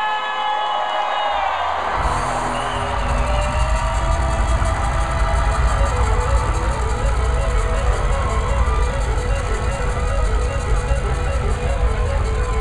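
Live rock band playing in a crowded club: voices sing over thin backing at first, then the bass and drums come in about two seconds in and the full band plays on loudly.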